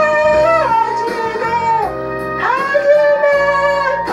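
A man singing a Korean ballad in a high register through a karaoke microphone over a backing track, holding two long notes. He sings it in C, a whole step above the original B-flat key.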